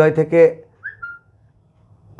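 A man's voice ends a phrase, then about a second in a short, high whistling tone rises and holds steady for a moment before stopping.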